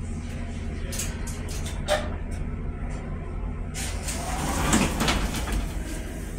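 Mongrain hydraulic elevator with a steady low machinery hum, a sharp click about two seconds in, then the cab's steel doors sliding open over the last two seconds.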